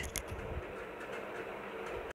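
Steady background room noise with a faint low hum, and a few soft clicks just after the start.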